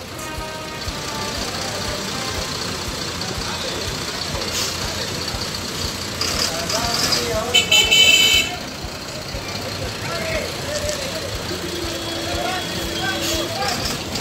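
Street traffic beside a heavy truck: steady engine and road noise with people's voices in the background. About eight seconds in comes a loud, short, high-pitched toot, and near the end a car horn sounds on one steady note for about two seconds.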